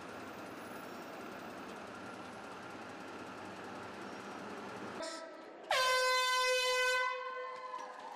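Steady background hubbub, then a single loud air horn blast about five and a half seconds in: one steady tone held for over a second that then fades away.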